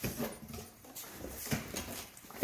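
A stack of shrink-wrapped vinyl LP records being handled: soft knocks and shuffling of the sleeves, with a few light knocks near the start, about a second in and about a second and a half in.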